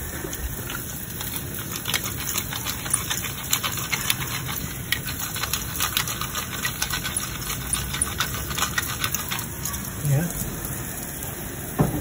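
Pepper mill being twisted over a saucepan of tomato sauce: a fast, irregular run of dry grinding clicks that stops about ten seconds in.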